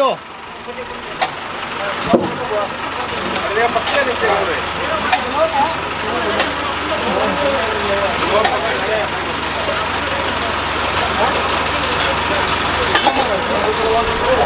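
A heavy vehicle's engine running steadily, growing gradually louder, with occasional sharp knocks and men's voices in the background.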